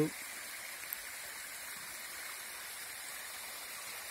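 Shallow creek water running over a large flat rock slab: a steady, even rushing.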